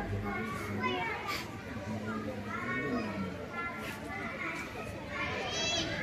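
A group of children's voices chattering and calling out over one another, with adult voices mixed in.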